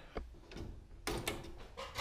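A sheathed electrical cable being cut: a few faint, short clicks and snips, mostly about a second in.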